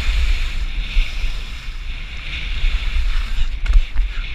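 Skis sliding and scraping over packed snow at speed, a steady hiss, with heavy wind buffeting on the action camera's microphone.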